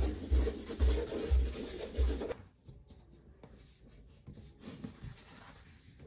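Charcoal scribbled hard across paper on a drawing board: a scratchy rasp with a low knock about twice a second. It stops suddenly a little over two seconds in, leaving only faint, light strokes.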